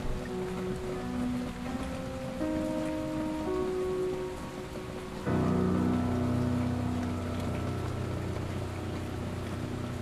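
Kawai NV10 hybrid digital piano playing a slow phrase of single notes, then a loud low chord struck about five seconds in and left ringing. A steady patter of recorded rain runs under it.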